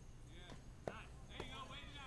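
A single sharp knock just under a second in, over distant men's voices calling across an open field.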